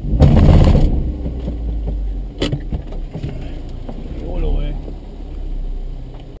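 Car engine idling, heard as a steady low rumble from inside the cabin. A loud rushing burst fills the first second, and a sharp click comes about two and a half seconds in.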